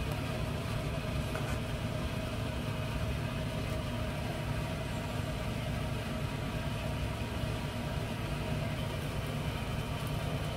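A pot of beef and radish soup at a full boil on a gas burner: a steady, low rumble of bubbling and burner flame.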